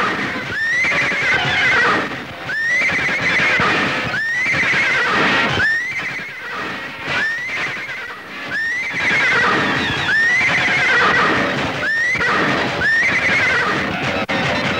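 Horse neighing over and over, about ten whinnies in a row, each a sharp rise in pitch that falls away in a shaky tail.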